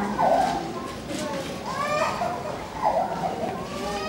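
A man's voice speaking over a public-address system, with rising pitch in some phrases and echo from the loudspeakers.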